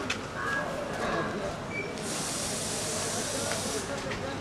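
A steady, high hiss starts abruptly about halfway through, lasts nearly two seconds and cuts off just before the end. It sits over low outdoor background noise with faint clicks.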